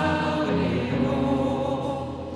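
Church worship singing with a woman's voice leading, in long held notes; the note changes about half a second in.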